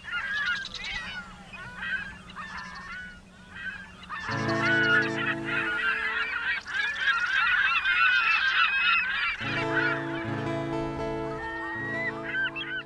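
A flock of birds calling over the water, many short overlapping honking calls throughout. About four seconds in, a sustained low musical chord comes in under them, breaks off briefly and returns.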